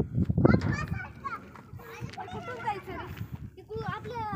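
Children's voices talking and calling out, high-pitched and excited. A loud low rumble on the microphone fills the first half second.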